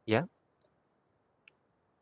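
Two faint, short clicks about a second apart in near silence, after a single spoken word.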